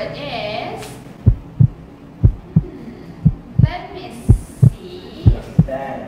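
A heartbeat sound effect for suspense: five deep double thumps, lub-dub, about one pair a second, starting about a second in.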